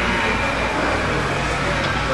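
Steady background noise of a pool hall: a low hum under an even hiss, with no cue or ball strikes.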